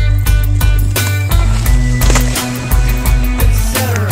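Background music: a loud song with a steady drum beat and bass, ending in a falling slide.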